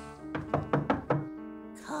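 About five quick knocks on a wooden door, over soft background music.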